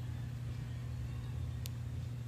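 Steady low background hum of room noise, with a single faint tick near the end.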